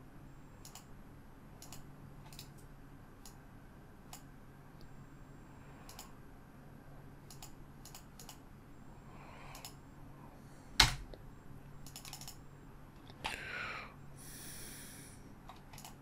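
Faint computer mouse and keyboard clicks, scattered at irregular intervals, with one sharper click about eleven seconds in.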